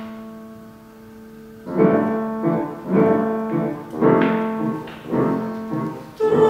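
Grand piano playing alone between sung phrases of an art song. A held chord dies away, then four chords are struck about once a second over a sustained low note.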